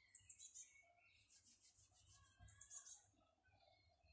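Faint songbird chirping: a short run of quick, high, falling notes near the start, repeated about two and a half seconds in.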